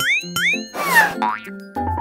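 Cheerful children's cartoon background music with springy 'boing' sound effects: two quick rising boings at the start, then a whooshing swoop with a falling whistle about a second in. A low sustained tone joins the music near the end.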